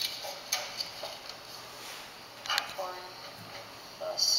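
A few sharp taps and clicks of a marker on a paper mat over a tabletop as a sum is written, with a couple of brief, quiet bits of voice.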